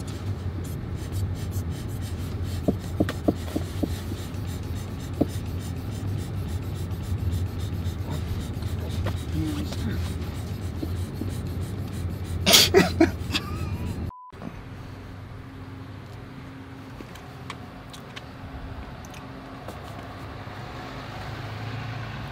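A car idling, heard inside the cabin as a steady low hum with a few light clicks. About twelve and a half seconds in there is a brief loud vocal outburst. The sound cuts off suddenly at about fourteen seconds and is followed by a quieter steady hum.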